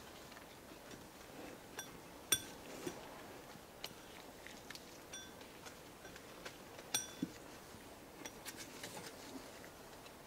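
Faint handling of metal engine parts: scattered small clicks and taps, the two sharpest clinking with a brief ring about two seconds in and near seven seconds, as a cylinder liner is picked up from among the others.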